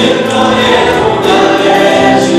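Live worship band playing a song: a woman and a man singing together into microphones over strummed acoustic guitar and electric guitar.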